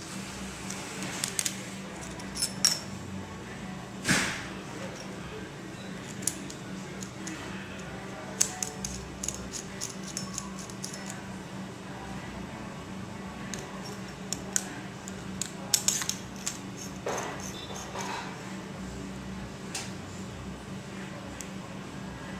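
Small metal parts of a portable oil vaporizer pen clicking and clinking as they are handled and the cartridge is fitted to the battery. Scattered sharp taps come in small clusters, with one louder brief noise about four seconds in, over a steady low hum.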